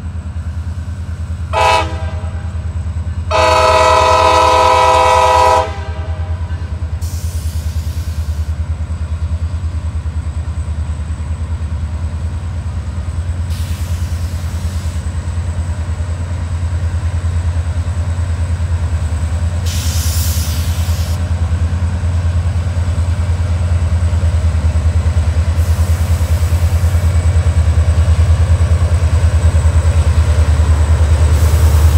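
CSX diesel freight locomotive's air horn sounding a short blast and then a longer one of about two seconds, over the low, steady rumble of the locomotives' diesel engines, which grows louder as the train approaches.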